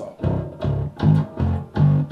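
Mike Lull T-Bass electric bass, tuned down to C, playing a slow riff of low, separate plucked notes, about one every half second.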